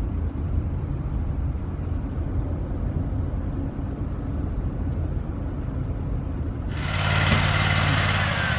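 Steady low road rumble inside a van's cab while driving. About seven seconds in it cuts abruptly to the louder running of a tracked concrete buggy's small engine, with a steady hum and a hiss.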